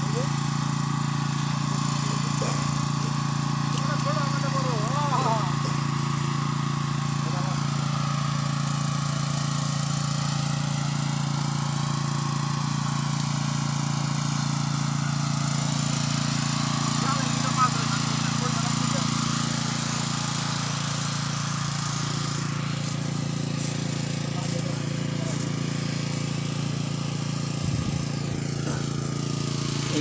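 A small engine running steadily at constant speed, a low even hum that does not change.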